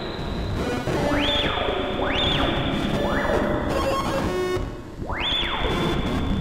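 Electronic synthesizer jam from a hardware rig sequenced by an Elektron Octatrack MKII, with Moog Grandmother and Bastl Softpop 2 synths. A resonant filter sweeps up sharply and falls back about once a second, with a short gap about four seconds in, over a gritty, noisy bed.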